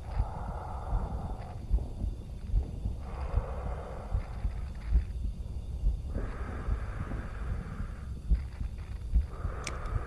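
Heartbeat sound effect from a moon-launch virtual reality soundtrack, low thumps about once a second over a steady throb. A softer hiss swells and fades every three seconds or so. It is heard through a video call's audio.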